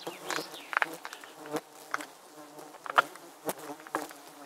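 Flies buzzing close around the microphone, their drone swelling and fading as they pass, with a few sharp ticks among it. The loudest tick comes about three seconds in.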